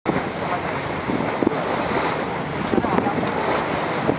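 Wind buffeting the microphone and water rushing and splashing past the hull of a small boat under way, a steady rough noise with uneven surges.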